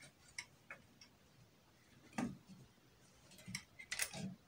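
A few faint clicks and taps from hands working a wire into a plastic extension socket strip, the loudest about two seconds in.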